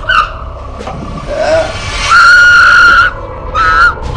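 A woman screaming in fear: a brief cry at the start, then one long, high, loud scream of about a second, and a shorter cry near the end.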